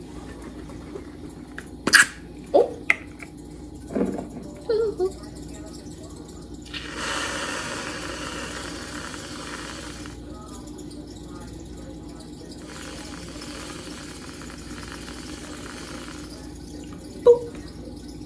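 A can of Reddi-wip aerosol whipped cream is shaken, with a few sharp knocks, and then sprayed through its nozzle. There is a hiss of about three seconds, then after a short pause a fainter hiss of a few seconds more.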